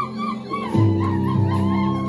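Live church concert music: sustained keyboard and bass chords under a high melody line of quick rising-and-falling notes, with a new low chord coming in just under a second in.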